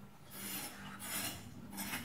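Rhythmic rasping scrapes, three short hissing strokes in quick succession, over a steady low hum.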